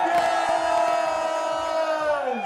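Voices giving one long, loud held cheer as the trophy is raised, the pitch staying level throughout.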